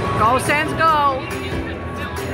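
Music playing over a hockey arena's public-address system, with one drawn-out voice calling out over it for about a second near the start, its pitch rising and then falling.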